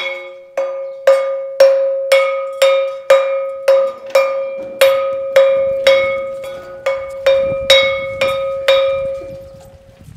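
Hanging metal-plate school bell struck over and over with a stick, about twice a second, each stroke ringing out and fading before the next; the strokes stop just before the end. It is rung as the bell that lets school out.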